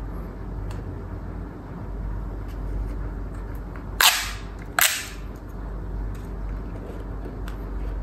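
Plastic pop tube toy being pulled, its corrugated sections snapping open in two sharp pops a little under a second apart, about halfway through.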